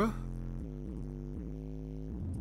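A bass-heavy song playing through a car audio system's Skar Audio subwoofers: a deep, steady bass note under a pitched melody line that steps up and down.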